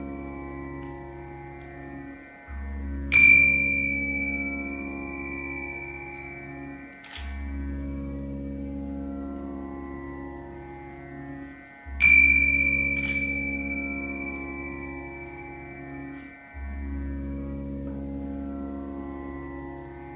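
Sitar played slowly in Indian classical style over a low drone that breaks off and starts again about every five seconds. Two bright, ringing notes are struck, about three seconds in and again about twelve seconds in, each dying away slowly.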